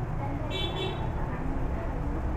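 Steady low rumble of background road traffic, with a short high-pitched tone about half a second in.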